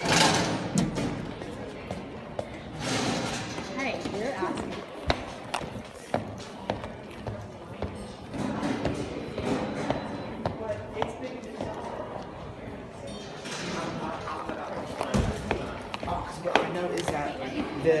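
Indistinct talking, with footsteps and a few thumps on stairs.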